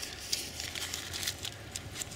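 A Japanese paper apple bag crinkling and rustling in the hands in irregular crackles as it is worked off the fruit on the branch.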